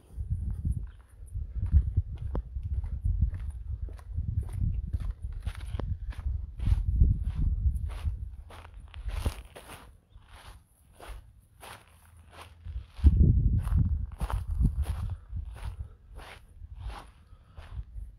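Footsteps walking at a steady pace, about two a second, on gravel and shingle, with gusts of wind rumbling on the microphone, strongest about two-thirds of the way through.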